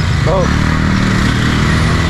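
Motorbikes and scooters idling and creeping at close range in a traffic jam, a steady engine drone.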